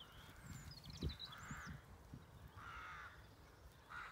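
Faint bird calls: high twittering chirps in the first second and a half, and two harsh caws of about half a second each, about a second and a half and nearly three seconds in. A soft low thump comes about a second in.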